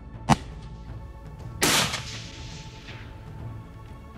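.30-06 hunting rifle firing: one sharp crack, then a second, longer blast about a second later that trails off over a second and a half.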